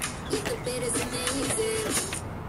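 Background music: a song with a stepping melody over a regular beat.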